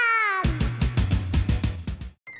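TV title-theme jingle: a high, cartoonish voice-like note sliding down in pitch for about half a second, then a quick run of drum hits with heavy bass.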